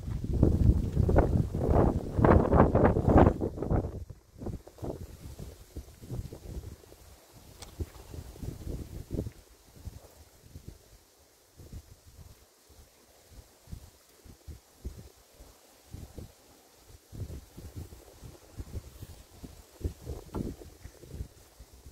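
Wind buffeting the microphone and rustling in dry brush, loud for the first four seconds, then dropping to faint, irregular small rustles and taps.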